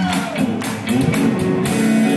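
Live rock band playing: electric guitar, bass and drums, with a steady cymbal beat, heard from the audience in a theatre.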